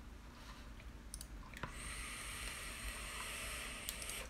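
A vape (electronic cigarette) being drawn on: a few clicks, then a steady hiss of about two seconds as the vapour is inhaled, cut off by a click.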